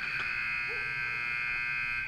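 Ice rink's end-of-period buzzer sounding one steady, loud electric tone for about two seconds, signalling the end of the second period; it starts and cuts off abruptly.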